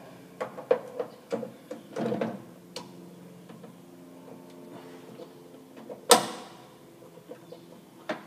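Scattered light clicks and taps of an Allen key working the lugs of a breaker in a metal electrical panel, with one louder knock on the metal about six seconds in.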